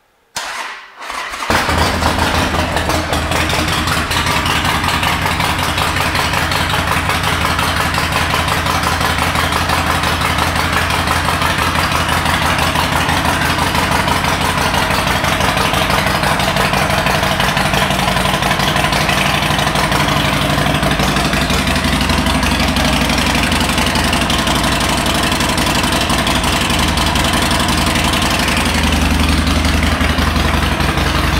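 2008 Harley-Davidson Sportster 1200 Custom's air-cooled V-twin with Vance & Hines pipes, cranked by its electric starter and catching about a second and a half in, then idling steadily.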